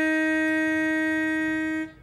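Round chromatic pitch pipe blown on one steady reed note, sounding the starting pitch for the singers. The note cuts off near the end.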